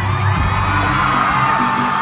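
Live concert audio from a phone in the audience: music with a steady bass, and the crowd cheering and screaming over it.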